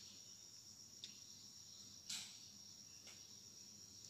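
Near silence: room tone with a faint, steady high-pitched tone and soft clicks about once a second.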